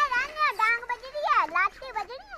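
A young boy's high-pitched voice calling out in long, rising and falling calls, the kind of calls used to drive the pair of bullocks pulling his plough.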